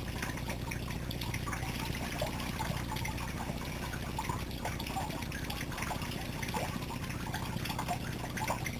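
A shower running steadily, the spray falling and splashing on a person standing under it, with scattered small splashes throughout.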